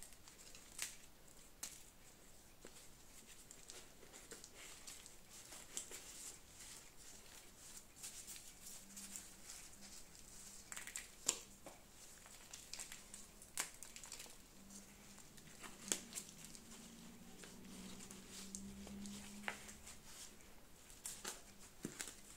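Faint crinkling, rustling and scattered small clicks of gloved hands handling primula plants, potting soil and plastic pots over newspaper.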